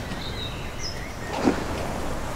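Quiet outdoor street ambience: a steady low background hum, a few short bird chirps in the first second, and a single soft thud about one and a half seconds in.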